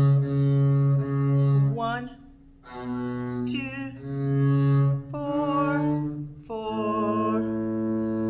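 Double bass bowed in slow, long held notes through the first line of a simple folk tune: D, C sharp, down to B, back up through C sharp and D, settling on a lower A near the end, with a short break between notes a little over two seconds in.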